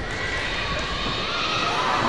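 Arena crowd hubbub with indistinct voices and scattered cheering, growing slightly louder toward the end.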